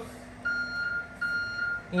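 An electronic beep: a steady high tone sounding three times with short breaks, starting about half a second in, the last one longest.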